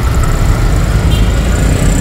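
City street traffic, with vehicle engines running in a dense low rumble and auto-rickshaws close alongside. A faint steady high whine runs through it.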